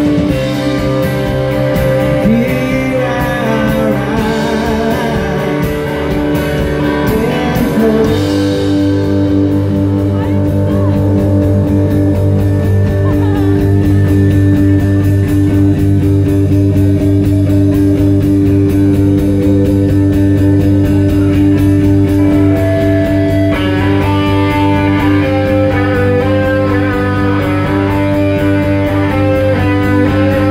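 Live rock band playing: a male singer over electric guitar and drums. The singing stops about eight seconds in and the band carries on instrumentally, with a higher guitar line coming in later on.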